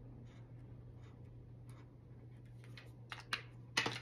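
Faint scratching and light taps of a highlighter colouring in squares on a paper chart, over a low steady hum. A few sharp clicks come near the end.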